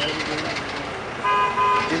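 A vehicle horn sounds once, a steady note lasting under a second, starting about a second and a quarter in, over a low hum of traffic.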